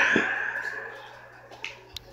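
A hip-hop track dying away as it ends, with a low thump just after it starts to fade. Near the end come two short, sharp clicks.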